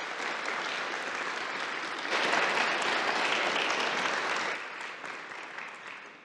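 Audience applauding. The clapping swells about two seconds in and dies away near the end.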